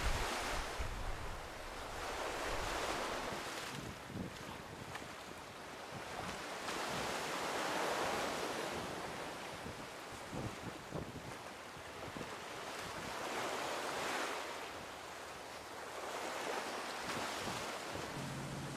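Ocean surf washing in and out on a rocky shore, swelling and fading every few seconds, with some wind on the microphone.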